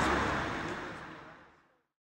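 Street ambience with traffic noise, fading out to silence about a second and a half in.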